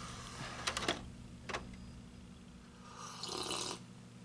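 DVD player's disc tray closing over a low hum, with sharp mechanical clicks about a second in and again shortly after as the tray draws in and the disc is seated. A short hiss follows near the end.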